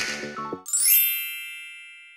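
The end of a music track, with a cymbal-like hit at the start, cuts off about half a second in. A bright chime of several high ringing tones then sounds and fades slowly: a logo sound effect.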